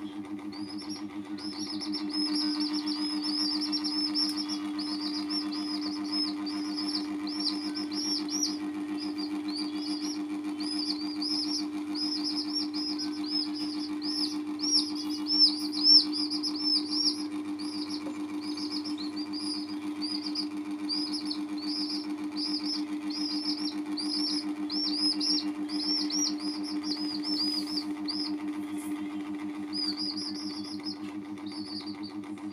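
Baby chicks peeping continuously, a rapid string of short, high chirps, over a steady low mechanical hum.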